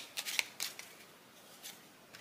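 Tarot cards being handled: a few crisp card snaps and flicks in the first second as the deck is finished shuffling, then quieter, with a soft tap as a single card is laid down on the spread.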